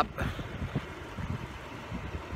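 Wind buffeting the microphone: a low, irregular rumble.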